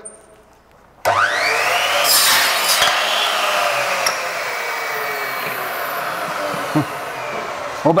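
Electric miter saw spinning up with a rising whine about a second in, its blade cutting through a gypsum plaster cornice at a 45-degree angle, then the blade winding down with a slowly falling whine.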